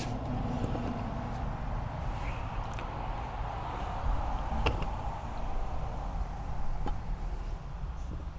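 Steady low outdoor background rumble, with a few light clicks and taps from the plastic pool test kit being handled, the sharpest a little over halfway through.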